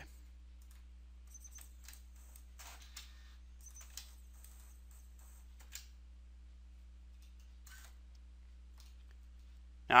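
A few faint, scattered computer mouse clicks over a steady low hum, as a hose route is dragged and edited on screen.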